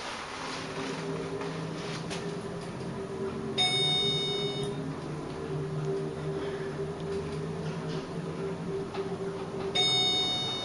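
Montgomery KONE elevator car travelling down with a steady hum. A short electronic floor chime sounds twice, about four seconds in and again at the end, as the car passes a floor and reaches the next.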